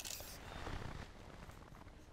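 Faint handling noise of a steel tape measure being pulled out and held against a gel block: a click and a short rasp near the start, then soft scraping that dies away.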